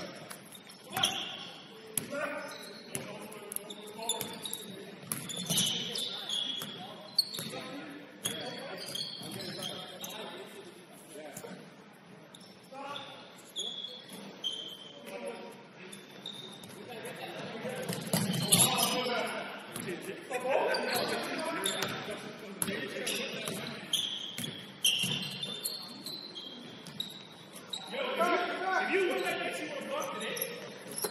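Basketball game sounds echoing in a large gym: a basketball bouncing on the hardwood floor, short high sneaker squeaks, and indistinct shouts from the players.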